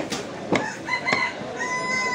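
A cleaver chops beef on a wooden stump block, two sharp knocks in the first half second. A rooster crows behind it, its call ending in a long held note near the end.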